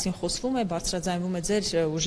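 Speech only: a man talking steadily in Armenian into an interviewer's microphone.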